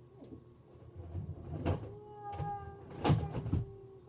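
Knocks and clatter of hard plastic Nerf blasters and other things being shifted about in a clothes closet, with a few sharp knocks in the second half, the loudest about three seconds in.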